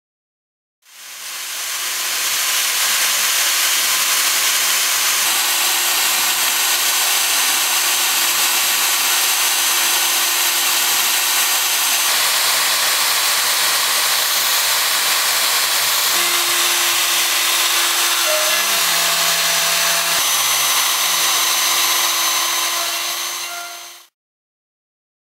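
CNC router spindle running a 90-degree half-inch V-bit at 25,000 RPM and V-carving high-density sign foam: a steady high whine over a hiss of cutting. It fades in about a second in and fades out at the end, with small shifts in tone about two-thirds of the way through.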